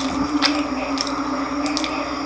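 Close-miked chewing of crispy deep-fried pork intestine (chicharon bulaklak), with about three sharp crunches. A steady low hum runs underneath.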